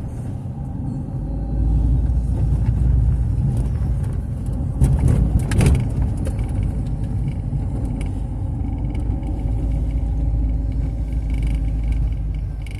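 Car driving slowly, its engine and road rumble heard from inside the cabin, getting louder about a second and a half in, with a few short knocks around the middle.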